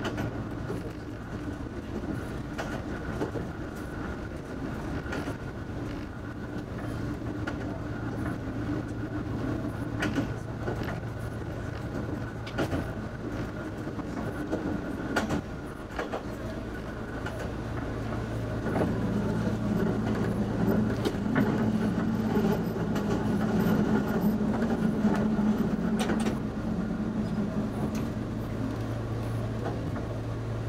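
Diesel railcar running along the track, heard from the driver's cab: a steady engine drone with irregular clicks of the wheels over rail joints. About two-thirds of the way through, the engine note deepens and grows louder, then eases off near the end.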